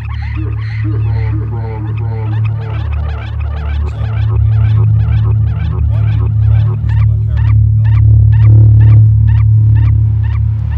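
Experimental electronic music: a loud, sustained low drone with warbling, chirp-like sampled sounds above it. From about four seconds in, a steady pulse of sharp clicks comes in at about three a second.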